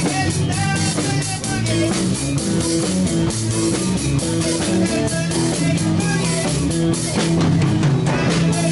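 Live rock band playing: a drum kit keeping a steady beat under electric guitar and bass.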